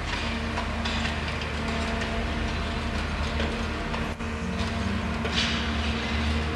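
Construction-site diesel machinery running steadily: a low engine drone with a steady hum above it, a few short brighter rattling bursts, and one sharp click about four seconds in.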